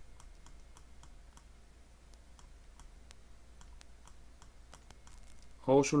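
Light, irregular clicks and taps, several a second, from the pen or mouse writing by hand on the screen, over a faint steady hum.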